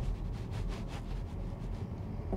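MG4 electric car rolling along tarmac with no engine sound, only tyre noise, with wind rumbling on the microphone.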